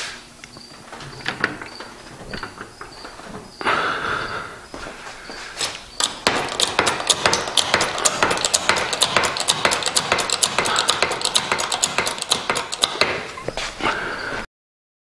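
Hydraulic bottle jack being pumped by hand to raise a car body off its frame: from about six seconds in, a rapid run of metallic clicks, about six a second, with a brief rush of noise a couple of seconds before.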